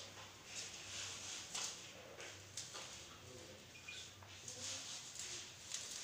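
A hand squeezing and turning flour and water into atta dough in a steel bowl: a string of soft, irregular rustling, squishing strokes, about one every half second to a second, as the dough starts to bind.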